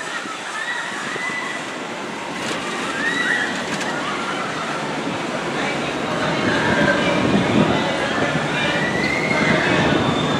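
Sky ride gondola running along its cable toward the station: a steady rush of mechanical and open-air noise that grows louder in the second half as the cabin nears the station machinery, with faint distant voices.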